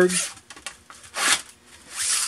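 Thin galvanized sheet metal scraping as it is handled on the bench: a short scrape a little past a second in, then a longer sliding scrape near the end as a cut piece is drawn across the other sheets.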